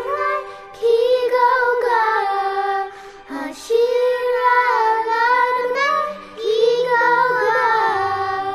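Children's voices singing a slow melody in three long phrases with short breaks between them, with little accompaniment underneath.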